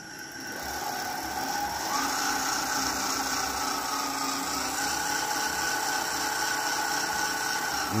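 200-watt friction-drive electric bicycle motor running with its roller pressed against the tyre, spinning the wheel. It makes a steady whine that rises in pitch and loudness over the first two seconds as the wheel comes up to speed, then holds steady.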